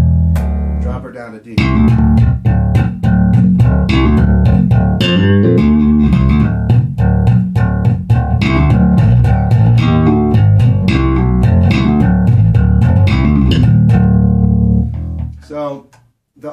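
Electric bass, a Gamma J17 Jazz Bass with EMG pickups, played amplified. A low note rings for about a second, then after a brief pause comes a busy, fast run of plucked notes lasting about thirteen seconds, which fades out near the end. The line is played in drop D using the Hipshot drop-D extender.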